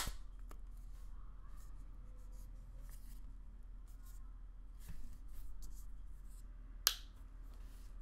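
Thin Kevlar-print Benks phone case being fitted onto an iPhone 15 Pro Max: sharp clicks as the case edges snap over the phone, with faint rubbing and handling in between. The loudest click comes right at the start, a softer knock near the middle and another sharp click about seven seconds in.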